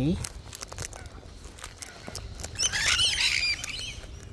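Sulphur-crested cockatoos cracking sunflower seeds in their beaks, a scatter of sharp clicks. About two and a half seconds in, a bird gives a harsh chattering squawk lasting about a second, the loudest sound here.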